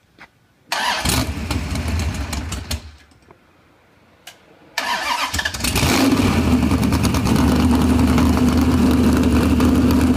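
Chrysler 440 big-block V8 with a cross-ram intake and a .760-inch-lift cam being started on an engine run stand. It fires for about two seconds and dies, then fires again about five seconds in and settles into steady running.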